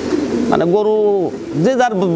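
Fancy pigeons cooing: one long, drawn-out coo starting about half a second in.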